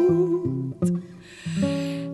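Instrumental gap in a gentle Frisian folk song: acoustic guitar plucking single notes, with a quieter dip about a second in. The singer's last held note fades out near the start.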